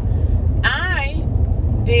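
Steady low rumble of car road and engine noise heard inside the cabin of a moving car, with one short spoken word about half a second in.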